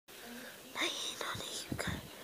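A person whispering.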